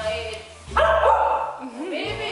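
Husky giving a loud, voice-like 'talking' bark-howl with a wavering pitch, starting under a second in and lasting under a second.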